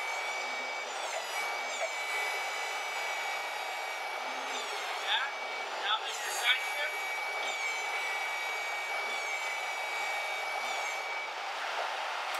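Toyota 8FGCU25 propane forklift running while its mast hydraulics are worked: a steady engine note under a high hydraulic whine that cuts out briefly twice and rises and falls in pitch as the levers are moved, with a few short knocks around the middle.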